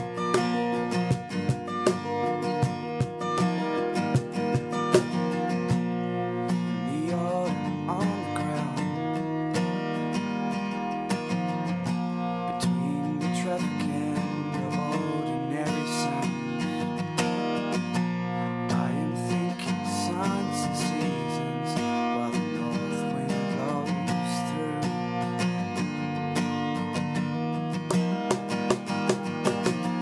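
Two acoustic guitars strummed together in a steady song accompaniment, with a man singing over them from several seconds in.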